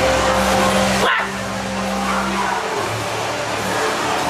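Haunted-maze soundtrack effects: a held low drone tone under dense, harsh effect noise. A sharp break comes about a second in, and the drone stops about two and a half seconds in.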